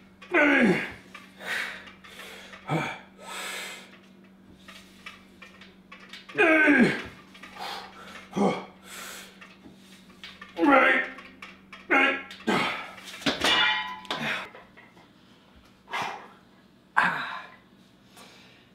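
A man grunting and groaning with effort through a set of heavy behind-the-neck lat pulldowns. There are about a dozen strained vocal bursts, several sliding sharply down in pitch, with breaths between them.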